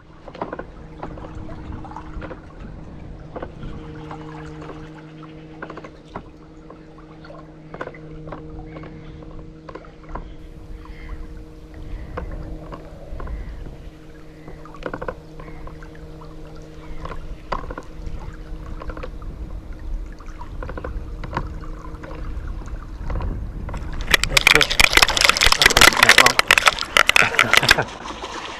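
Small electric trolling motor humming steadily, with scattered light clicks. Near the end a pike strikes the trolled lure, and the reel's drag gives line in a loud, rapid ratcheting that lasts about four seconds.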